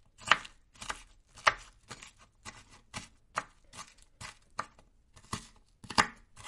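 Kitchen knife chopping vegetables on a plastic cutting board: a series of sharp knocks, about two a second and unevenly spaced.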